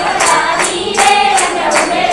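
A group of voices singing a Hindu devotional bhajan together, accompanied by jingling hand percussion keeping a steady beat of about three strikes a second.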